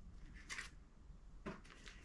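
Faint rustling of a vinyl record album jacket in a plastic outer sleeve being handled and slid onto a cloth-covered table: two brief soft rustles, about half a second in and again about a second and a half in.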